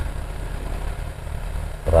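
Submerged aquarium pump running: a steady low hum over a hiss of moving water.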